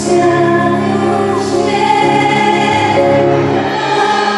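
A woman singing in Polish into a microphone with a live orchestra, holding long notes over sustained string accompaniment.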